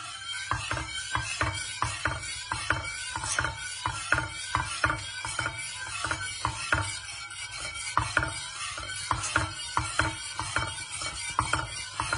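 Wire whisk clicking and scraping against a stainless steel pan while stirring pastry cream as it cooks and thickens on the heat, a quick, even run of clicks about three a second.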